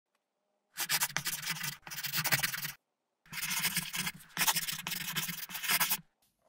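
Writing on paper: two runs of quick scratchy strokes, about two seconds each, separated by a half-second pause and cut off abruptly at the end.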